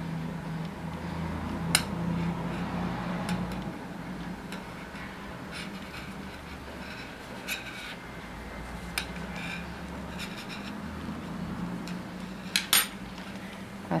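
Metal knitting needles ticking against each other while yarn is worked, a few sharp separate clicks a second or more apart over a low steady hum.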